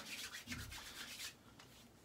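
Hands rubbing a dab of aftershave balm: faint soft rubbing that dies away after a little over a second.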